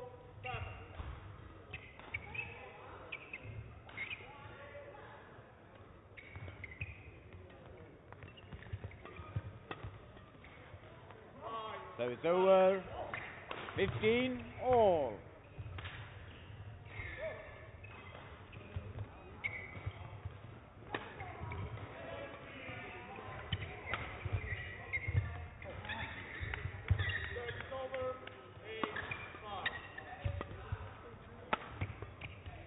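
Badminton play on an indoor court: scattered sharp shuttlecock hits and footfalls. About twelve seconds in, as the point ends, a player gives two loud shouts, each rising and falling in pitch.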